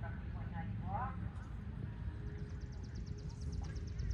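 A horse cantering on sand arena footing, its hoofbeats mixed with a steady low outdoor rumble. Faint voices come in the first second, and a fast, faint, high ticking trill follows in the second half.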